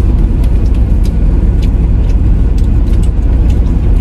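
Steady low rumble of a car heard from inside its cabin, with a few faint clicks over it.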